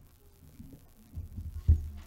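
A cluster of dull, low thumps about a second in, with one sharp louder knock near the end, typical of a microphone being bumped or handled at a lectern.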